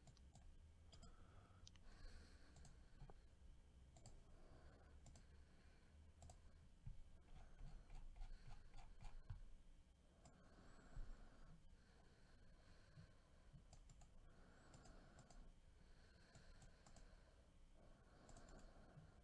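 Near silence with faint, scattered clicks of a computer mouse and keyboard.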